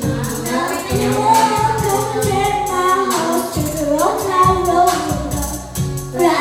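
Karaoke: children singing a pop song into microphones over a loud backing track with a steady drum beat.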